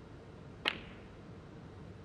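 A snooker shot played with the cue ball resting close to the yellow: one sharp click about two-thirds of a second in as the cue strikes the cue ball and the cue ball hits the yellow, with a short ring after it.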